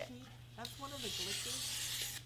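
Craft knife blade drawn through board in one long straight cut, a steady scraping hiss that starts about a second in and lasts about a second.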